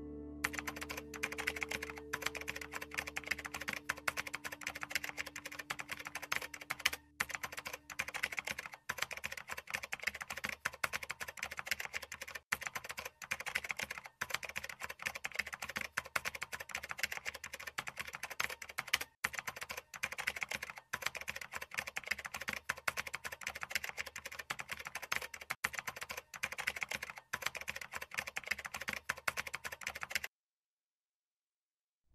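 Fast, continuous keyboard typing clicks with a few brief pauses. A held guitar note from the score fades out under the typing over the first several seconds.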